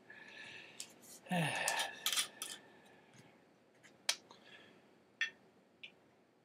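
A glass gin bottle being handled and its screw cap twisted off, with glassware set down: a scatter of sharp clicks and short scrapes.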